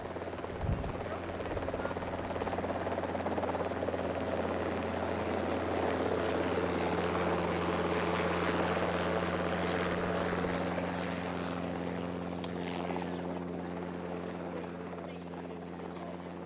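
A steady engine drone from a passing craft, with a low hum under it, growing louder toward the middle and fading again toward the end.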